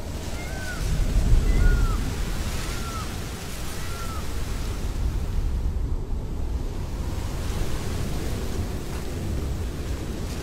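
Film night ambience: a steady low rushing of water that swells about a second in, with a short arching bird call repeated four times about a second apart in the first few seconds.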